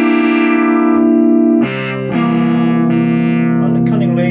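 Oberheim OB-SX analog polyphonic synthesizer playing a bright brass patch: one held chord, then a change to a second, lower-voiced chord held from about two seconds in.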